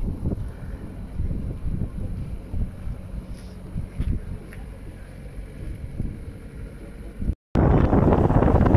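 Wind buffeting the microphone: an uneven, gusty low rumble. About seven and a half seconds in it cuts out for a moment, then comes back louder.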